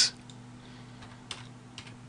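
A few faint, spaced-out computer keyboard keystrokes as a number is typed in.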